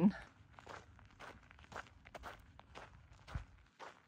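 Faint footsteps on a gravel trail, about two to three steps a second.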